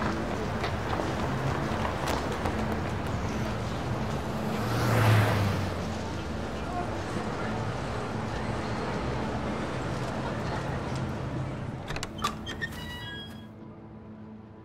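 Town-street ambience with traffic, and a vehicle passing about five seconds in. Near the end a shop door clicks open and a small door bell rings, then the street noise falls away.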